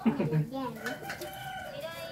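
One long, steady, high-pitched animal call in the second half, after brief talk at the start.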